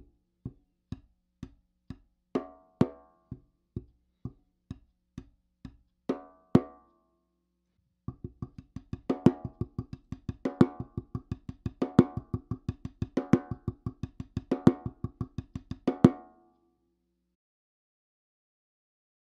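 Drumsticks playing a 3-3-2 rhythm on a 6-inch practice pad set on a snare drum, each group on a different surface: the pad's edge, the pad's rubber face, and the drum head, whose strokes ring louder. The first part goes at an even pace of about two strokes a second; after a short pause about eight seconds in, a faster, denser run follows with an accent about every second and a half, stopping about sixteen seconds in.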